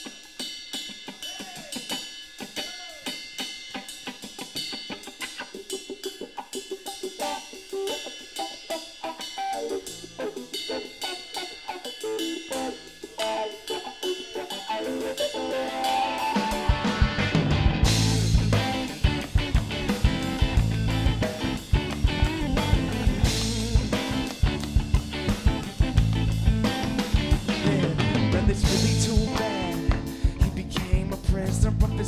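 Live band's drum kit playing a steady groove with rimshots and cymbal, joined about halfway by bass guitar and the rest of the band, making a much fuller, louder sound.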